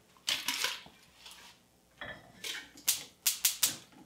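Gas range burner igniter clicking, about three sharp clicks a second, as a burner knob is turned to light it; the clicking starts about two seconds in. Before it come a couple of softer knocks.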